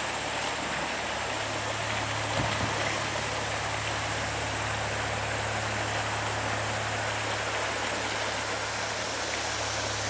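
Creek water running over shallow rocky riffles: a steady rushing hiss, with a steady low hum underneath from about a second in.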